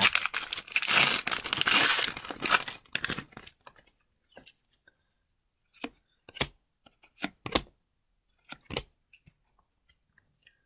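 A hockey card pack wrapper being torn open and crinkled for about three seconds, then the cards flicked through by hand in a handful of short, soft clicks.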